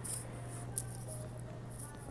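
Airport terminal ambience: a steady low hum with a few faint, short electronic tones from slot machines around the middle.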